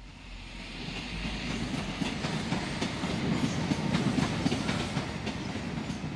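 Passenger train running past on the rails, its rumble building over the first couple of seconds and then holding steady, with wheels clattering over the track.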